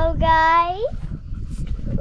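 A child's voice holding one long sung note that glides upward and breaks off about a second in.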